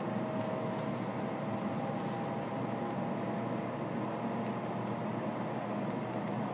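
Interior running noise of an N700 series Shinkansen, heard inside a passenger car: a steady rumble and hiss with a faint steady whine.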